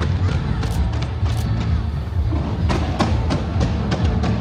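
Fireworks going off in a dense run of sharp bangs and crackles, coming thicker in the second half, with music playing underneath.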